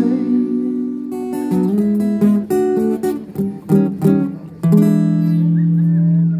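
Acoustic guitar strummed: a run of rhythmic chord strokes, then a chord left ringing for the last second or so.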